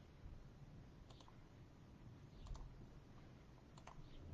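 Near silence broken by a few faint clicks, coming in small pairs about a second or so apart.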